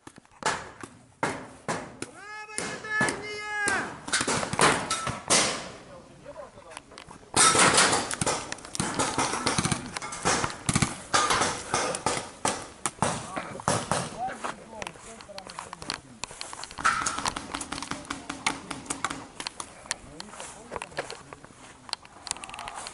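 Shouting voices about two to four seconds in, then a long run of quick irregular clicks and knocks over rustling noise from a paintball player on the move with a body-worn camera.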